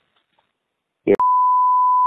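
A censor bleep: one steady 1 kHz beep tone that starts suddenly about a second in, just after a clipped fragment of voice, laid over the recorded phone call to mask a word.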